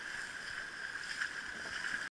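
Steady outdoor wash of wind and small waves lapping on a sandy shoreline.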